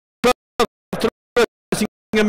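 Race commentator's voice chopped into short fragments, about five clipped bursts evenly spaced with dead silence between: the audio track is stuttering and breaking up.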